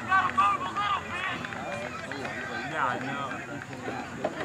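Indistinct voices of players and spectators calling out during a soccer match, loudest in the first half second, with no clear words.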